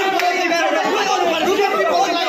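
A group of young men arguing, several voices shouting over one another at once so that no single speaker stands out.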